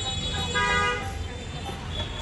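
A vehicle horn toots once, briefly and at a steady pitch, about half a second in, over a low rumble of street traffic.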